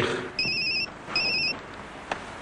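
A telephone ringing with an electronic, warbling ringtone: two short rings about three-quarters of a second apart.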